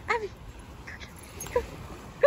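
A dog gives a short call that falls in pitch just after the start, with a fainter brief call about a second and a half in.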